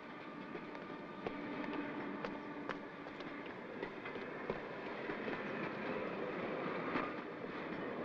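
A train approaching the station: a rumble and clatter of wheels on rails that grows steadily louder, with scattered sharp clicks.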